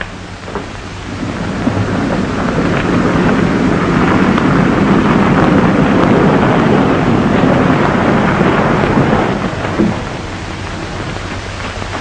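1930s sedan driving along a dirt road: a noisy rush of engine and tyres that builds over the first two seconds, holds, and dies down about ten seconds in.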